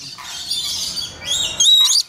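Lories making high, shrill chirps and squawks while feeding from a nectar cup. A run of squeaky notes that step up and down in pitch is loudest in the second half.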